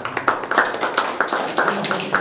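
Audience applauding, a quick patter of separate hand claps at the close of a talk.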